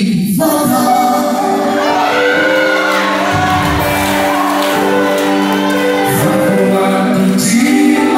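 Gospel song performed live by a male and female duo singing into microphones over instrumental accompaniment, with the sound of a large hall around it.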